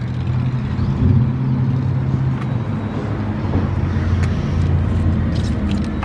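Steady low rumble of a motor vehicle running, with a wash of outdoor traffic noise.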